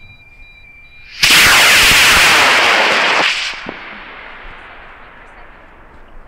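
AeroTech I284 high-power rocket motor lighting about a second in and burning for about two seconds with a loud, crackling rush. The motor cuts off and the sound fades away as the rocket climbs. Before ignition a faint steady electronic tone stops as the motor lights.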